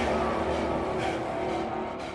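A loud rumbling sound effect with a deep low end, starting suddenly and then slowly fading away.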